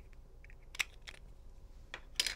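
A few faint plastic clicks as a small tool pries at the cover of a Versa GE wireless door/window contact sensor, the sharpest a little under a second in.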